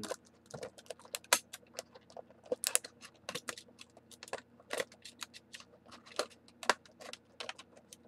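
Stiff clear plastic blister pack clicking and crackling as it is cut open with stabbing cuts: a string of irregular sharp clicks, a few of them louder.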